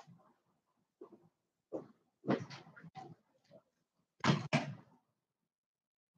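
Handling noise from jewellery and a display stand being moved near the microphone: a handful of short knocks and rustles about a second apart, with dead silence between them.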